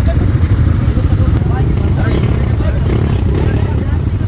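Several dirt bike engines, among them a Kawasaki KLX140G close by, running steadily at low revs, with people's voices scattered over them.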